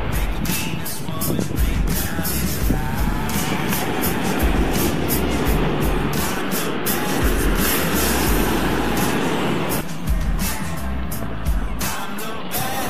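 Background music with a heavy, steady beat and deep bass.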